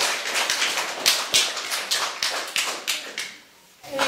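Scattered hand clapping from a few people: uneven sharp claps, several a second, that die away about three seconds in.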